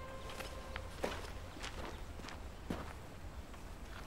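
Faint, scattered footsteps on a dirt yard with a few soft knocks and rustles as woven straw mats are picked up and handled.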